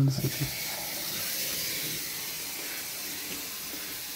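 A steady hiss that starts suddenly and holds nearly level, easing slightly toward the end.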